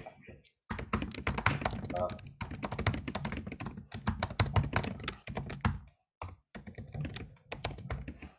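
Quick typing on a computer keyboard, a steady run of key clicks with a brief pause around six seconds in, heard over a video-call microphone.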